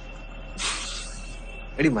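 A short breathy hiss about half a second in, over a steady low hum. A man's voice begins right at the end.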